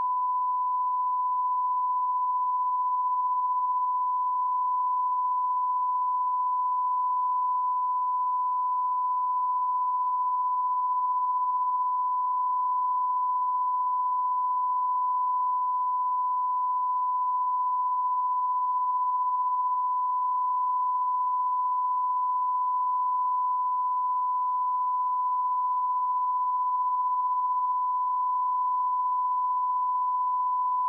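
A steady 1 kHz sine-wave reference tone from a bars-and-tone test signal, held at a constant pitch and level without a break.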